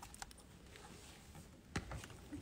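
Quiet room with a few faint clicks and one louder knock near the end: a phone being handled.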